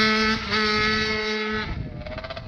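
Suzuki RM85 two-stroke motocross bike engine running at steady high revs, with a brief break in the note about half a second in. Near the end the note falls in pitch and fades as the bike pulls away.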